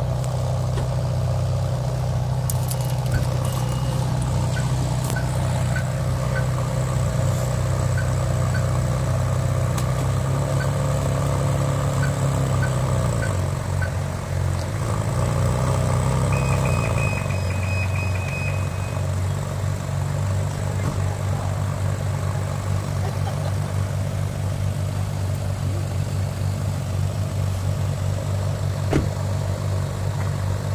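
Car engine idling, heard from inside the car's cabin: a steady low rumble whose note shifts slightly about halfway through.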